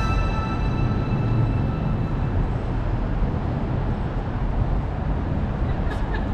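Background music fading out over the first couple of seconds, giving way to city street ambience with a steady low rumble of traffic.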